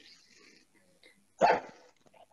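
A dog barking once, a single short bark about one and a half seconds in.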